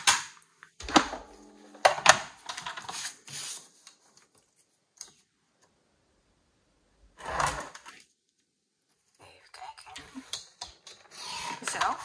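Black card stock being handled and set on a sliding paper trimmer, with a few sharp clicks and knocks, then the trimmer's blade carriage pushed along its rail to cut the card, a scraping sound that builds near the end.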